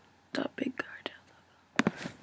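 Quiet whispered muttering, then a quick run of computer keyboard keystrokes near the end, as a web address is typed into a browser.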